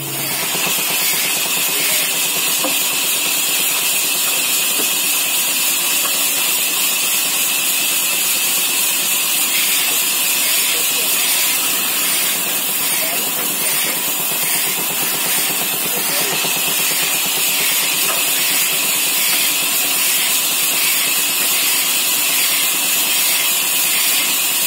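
Large sawmill band saw running, a loud, steady, high hiss that holds even throughout as a wooden plank is fed through the blade.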